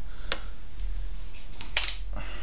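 A steady low hum runs underneath, with a short click about a third of a second in and a louder rustling click near the end, like handling noise.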